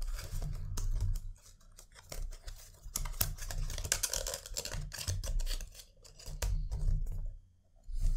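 A black cardboard perfume presentation box being opened and handled: a run of small clicks, scrapes and rustles, with a brief lull about two seconds in.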